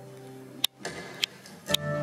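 A strummed acoustic guitar chord dies away, then three sharp, evenly spaced clicks come about half a second apart, like a count-in.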